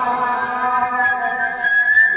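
Sambalpuri kirtan singing, the voices holding one long steady note rather than moving through words. A single high steady tone sounds over it through the second half.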